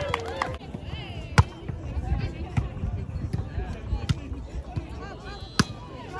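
A volleyball struck by hands twice, with sharp smacks about a second and a half in and near the end, the first the louder, amid players' voices calling out.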